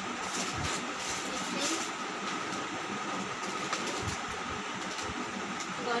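A plastic shopping bag and packaged items rustling and crinkling as they are rummaged through and handled, over a steady background hum.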